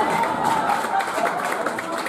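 Comedy club audience reacting: a mixed crowd noise of voices with some clapping.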